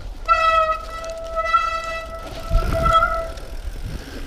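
A mountain bike gives a steady, high-pitched squeal lasting about three seconds on a fast trail descent, holding one pitch throughout. The squeal is most like a disc brake squealing under braking. A low rumble of trail noise comes in about two and a half seconds in.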